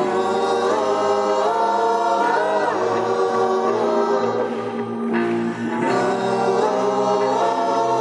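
Live band music: a slow passage of held, choir-like chords and voices over keyboards. The chords change every couple of seconds, with a few sliding pitches and no drum beat.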